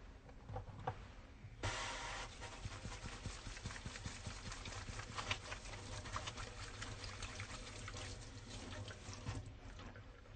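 Water running from a tap into a sink while hands are washed under it. It comes on suddenly about two seconds in and stops near the end, with small splashes and clicks throughout.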